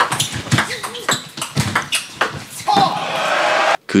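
Table tennis ball clicking off bats and table in a quick doubles rally, the hits coming at irregular short intervals. Near the end a crowd cheers and shouts, then cuts off suddenly.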